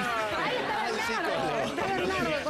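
Several people talking over one another: lively chatter with an exclamation.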